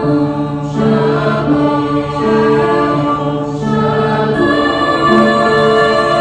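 Mixed choir of men's and women's voices singing, holding sustained chords that move slowly from one to the next.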